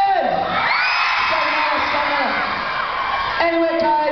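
A crowd of fans screaming, many high-pitched shrieks overlapping, swelling about half a second in and dying away after about three seconds, when a man's drawn-out calling voice comes back.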